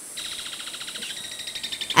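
An insect trilling: a fast, even pulsing, about twenty pulses a second, high in pitch, starting a moment in and running on steadily.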